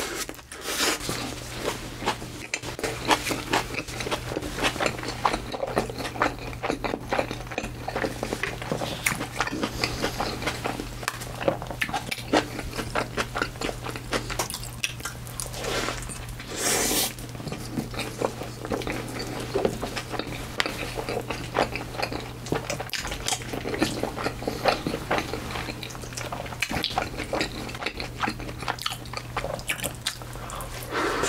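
Close-miked eating: continuous wet chewing, biting and crunching of a burger and crispy fried food, with one louder, longer crunch about halfway through. A steady low hum runs underneath.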